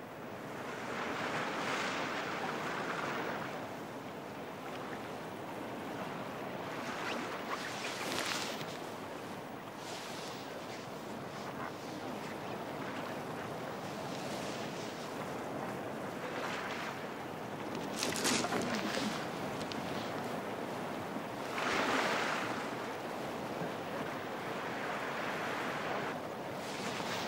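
Sea washing at the shore, a steady hiss of water with several louder surges as waves come in and break.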